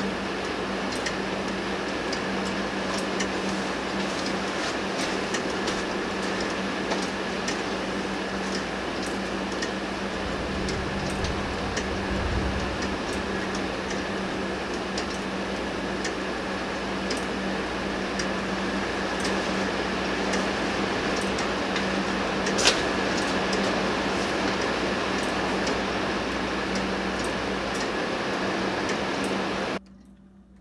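3D-printed plastic pendulum clock ticking, its escapement giving regular faint clicks over a steady hiss and hum, with one sharper click a little over twenty seconds in. The sound cuts off suddenly just before the end.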